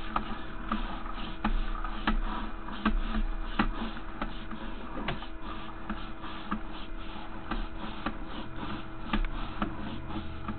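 Sewer inspection camera's push cable being fed out from its reel, making irregular clicks and rattles over a steady electrical hum from the camera system.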